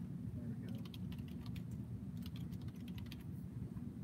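A quick run of keystrokes on a computer keyboard, starting just under a second in and stopping a little after three seconds, over a steady low hum.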